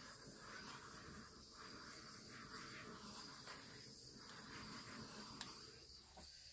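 Small handheld butane torch hissing faintly and steadily as its flame is played over wet epoxy resin, then shut off with a small click near the end.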